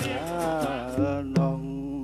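Traditional music: a solo voice singing long, bending melismatic notes over a steady drone, with a couple of sharp percussion strikes in the second half.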